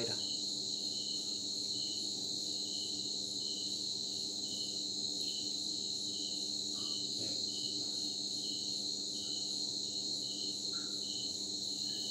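Crickets chirping steadily: a continuous high trill with a regular pulsing chirp about twice a second.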